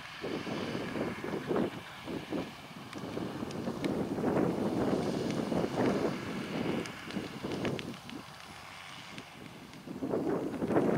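Wind buffeting the microphone in uneven gusts, over the distant running of a John Deere 6930 tractor pulling a muck spreader. The gusts ease off shortly before the end.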